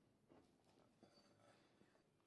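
Near silence: room tone, with only a few faint, soft handling sounds.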